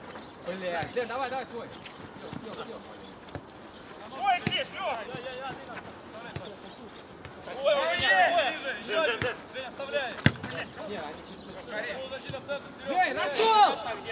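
Football players shouting across the pitch, with several sharp thuds of the ball being kicked, the loudest about ten seconds in.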